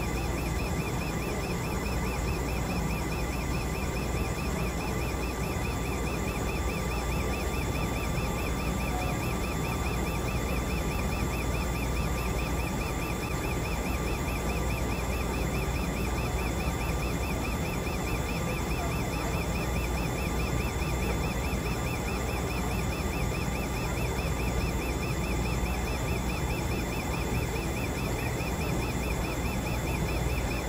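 Steady machine hum and whir of running laboratory chromatography equipment, with a faint high-pitched whine and an even, fast pulsing in the background.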